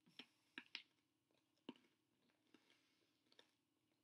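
Faint crunches of chewing a hard, stale piece of baguette: a few sharp crunches in the first two seconds, then a couple of quieter ones.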